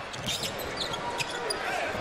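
A basketball being dribbled on a hardwood arena court, with a few short, high sneaker squeaks over steady crowd noise.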